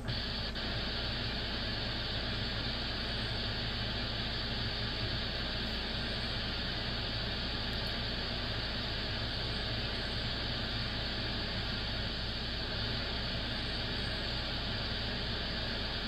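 Steady hiss of receiver static from an SDRplay software-defined radio tuned on the 2-metre amateur band near 144.39 MHz, with no station heard. It comes on abruptly about half a second in and stays even throughout.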